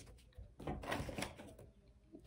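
Tarot cards being handled on a wooden table: a few soft clicks and rustles for about a second, then near silence.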